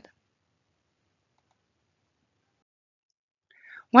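Dead silence between sentences of a recorded voice-over, broken near the end by a faint breath and then a woman's voice starting to speak.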